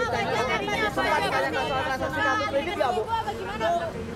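Several voices talking over one another: reporters in a press scrum calling out questions at once.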